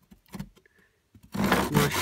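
Tenon saw starting a cut into a softwood block: after a near-quiet pause, quick, even back-and-forth saw strokes begin about a second and a half in.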